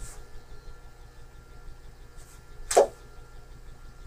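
Room tone of a small interview room recording: a low steady hum with faint thin whines, and one short sound about three-quarters of the way through.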